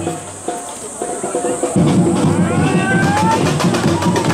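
Samba parade percussion: the drumming thins out for the first second and a half, then the full, loud beat comes back in, with hand-held tamborim-style frame drums among the instruments. Short pitched calls or voices glide over the beat near the middle.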